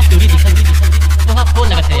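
Opening of a Chhattisgarhi DJ remix: a loud, steady deep bass drone under a rapid electronic beat roll, with a voice sample speaking over the track.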